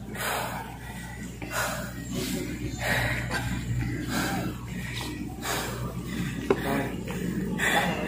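A man breathing hard, with deep breaths a little over a second apart, out of breath from a set of jump squats.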